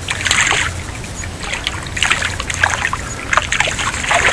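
A hooked small trevally (papio) splashing at the surface of shallow water as it is reeled in to the shore, in three short bursts: at the start, about two seconds in, and a smaller one near the end.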